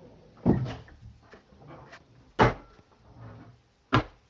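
Kitchen cupboard doors being opened and shut and things knocked about in the cupboard: three sharp knocks, the second and third the loudest, with faint rustling between.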